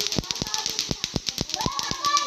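Lato-lato clacker toys: hard plastic balls on strings knocking together in sharp, uneven clacks, about five a second.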